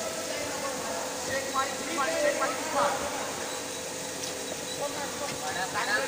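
Voices shouting and calling out around the cage at a combat-sports bout, with crowd chatter behind and a steady faint hum underneath.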